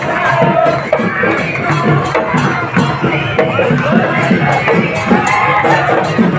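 Procession music: voices singing over a quick, even percussion beat, mixed with crowd chatter.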